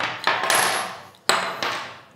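Small metal parts, screws and fittings, clattering onto a hard wooden tabletop: two sharp clinks about a second apart, each ringing briefly as it fades.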